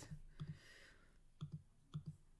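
A few faint computer mouse clicks, about four short sharp clicks spread over two seconds, some of them as quick double taps, over a quiet room.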